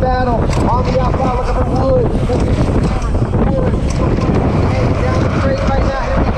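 Wind rushing over a helmet-mounted camera's microphone as a BMX bike races down the track at speed, with a race announcer's voice coming over the PA behind it.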